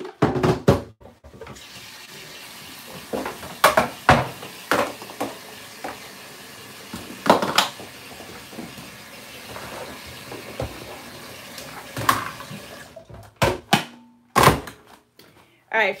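Tap water running into a kettle for about ten seconds, with a few sharp knocks and clatters of the kettle and sink before the water stops.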